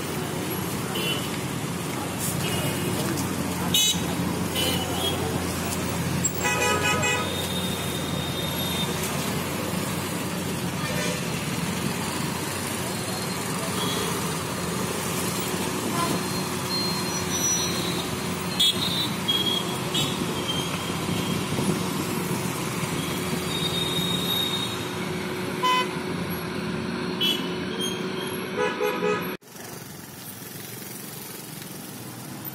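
Busy roadside traffic sound with engines running, voices in the background and vehicle horns honking: one horn blast about seven seconds in and a few short toots near the end.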